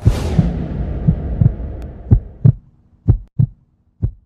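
Logo intro sound effect: a sudden whoosh that fades away over about two seconds, under low thumps coming in pairs about once a second.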